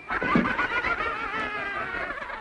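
Cartoon soundtrack sound effect: a short thump, then a wavering, high-pitched sound that slowly falls in pitch as the character tumbles.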